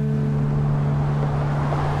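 A steady wash of outdoor noise with a low, steady hum underneath.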